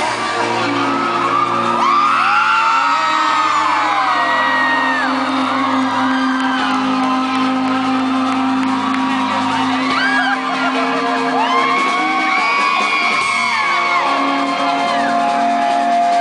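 Live rock band playing long held guitar chords through the PA, with fans in the crowd screaming and whooping over the music.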